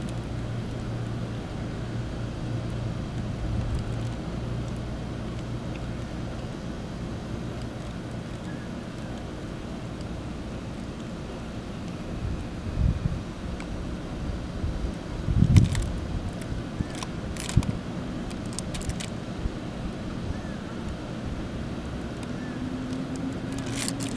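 Steady low hum of outdoor background noise. A few soft knocks and sharp clicks fall in the second half, and a low tone rises slowly near the end.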